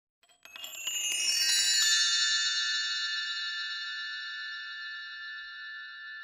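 Logo-sting music: a flurry of bright, bell-like chime notes swells in over the first two seconds, then settles into a high ringing chord that slowly fades.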